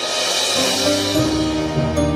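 Orchestral instrumental music produced in FL Studio: a bright swell washes in at the start, and low sustained notes come in about a second in beneath layered held chords.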